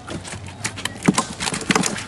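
Live tilapia flapping in a shallow tub as a hand reaches in among them: quick, irregular wet slaps of fish bodies against each other and the tub walls.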